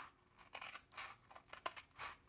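Scissors snipping through a cardboard paper towel roll tube: a series of short, quiet cuts.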